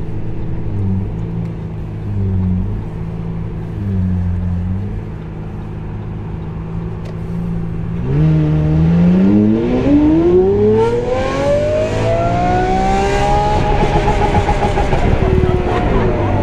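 Lamborghini Aventador SV Roadster's V12 with a Brilliant aftermarket exhaust, heard from the open cockpit. It runs low and steady with small rev wobbles, then about halfway through it goes into one long pull, the pitch climbing steadily for about five seconds and then holding high.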